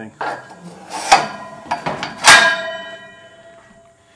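Steel horse-stall door hardware clanking: two sharp metal strikes about a second apart, the second louder, each leaving a ringing tone that slowly fades.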